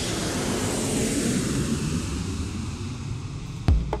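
Jet airliner engine noise used as a sound effect: a steady rushing rumble with no distinct tones. Near the end, a few sharp, heavy drum hits cut in as the music starts.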